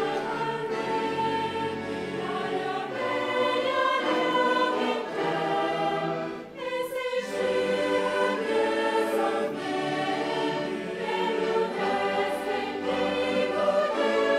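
A choir singing in sustained, held chords. There is a short break for breath about six and a half seconds in, after which the singing resumes.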